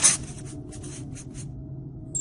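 A quick run of short scratchy rasps, about five a second, like scribbling or scratching, fading out about a second and a half in over a faint steady hum.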